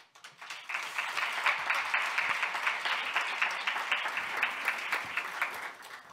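Audience applauding: dense clapping that builds within the first second, holds steady, and dies away near the end.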